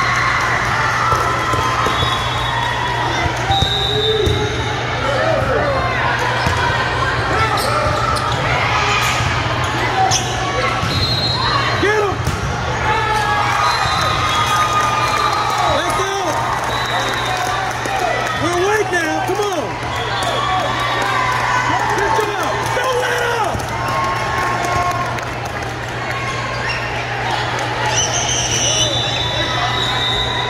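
Busy indoor volleyball gym: volleyballs being hit and bouncing on the court amid crowd chatter and shouts from players and spectators, over a steady low hum, with the echo of a large hall.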